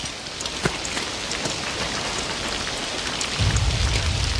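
Steady heavy rain falling on rubble and hard surfaces, with scattered sharp drop ticks. A low rumble comes in near the end.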